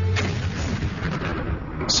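A landmine exploding and blasting earth into the air. The sudden blast comes just after the start and is followed by a rumble that dies away over about a second and a half.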